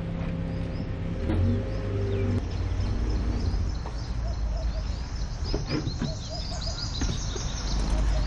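An SUV's engine running as it rolls up on gravel, its steady hum stopping about two and a half seconds in. Birds chirp throughout, and near the end the driver's door is opened.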